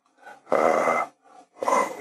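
A man's loud breath, about half a second long, taken between phrases of speech.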